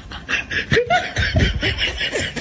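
People laughing, a rapid snickering laugh in quick repeated pulses.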